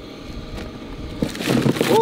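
Live shrimp being shaken out of a wet cast net into a styrofoam box: a burst of quick taps and rustles in the second half as they drop and flick against the box.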